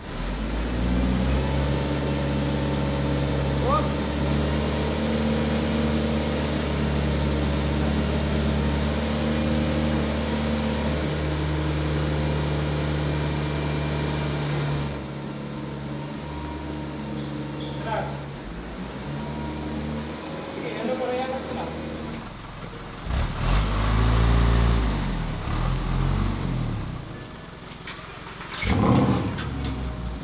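Flatbed tow truck's engine idling steadily through the first half. Then a quieter stretch with brief voices, and near the end the engine revving up and down several times.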